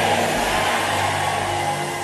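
Congregation praying aloud together, many voices blending into a steady wash, over a low held music chord.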